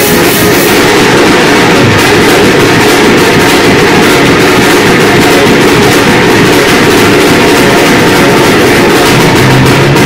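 Loud band music with drums and guitar playing a steady beat.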